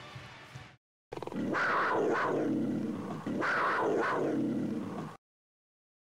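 A big cat's roar used as a closing sound effect: two long roars of about two seconds each, after a brief silence, cut off suddenly near the end.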